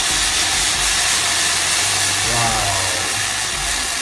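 Water sizzling in a very hot metal saucepan, a loud, even hiss. The pan is hot enough for the Leidenfrost effect, with the water held up on its own vapour.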